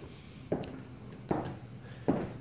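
Two soft footsteps indoors, a little under a second apart, over quiet room tone.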